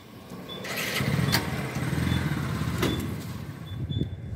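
A motor vehicle's engine rumbling, swelling up about a second in and fading again near the end, as a vehicle moves past at a fuel pump. Short faint high beeps repeat about every second and a half.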